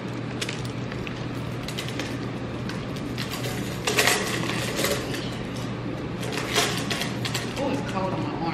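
The metal chain strap of a small purse clinks and rattles as it is handled and put on. The sharpest clinks come about four seconds in and again near seven seconds, over a steady low hum.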